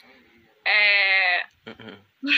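A person's loud, drawn-out 'aah' cry with a wavering, bleat-like quality, lasting under a second, starting about a third of the way in; a few short, fainter voice sounds follow near the end.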